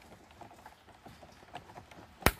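Faint small plastic ticks and scuffs as a Mustang headlight switch is pressed by hand onto its plastic mounting clip, just before it snaps home.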